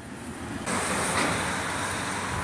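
Steady city street traffic noise, an even rushing hiss with no distinct vehicle, that swells up suddenly about two thirds of a second in and holds.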